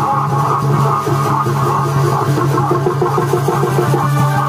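Loud accompaniment music for a Purulia Chhau dance: a continuous melody over a low held tone, with no break.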